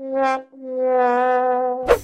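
Sad-trombone comedy sound effect: the last of its falling brass notes, a short one and then a long held lower one, ending in a sharp click.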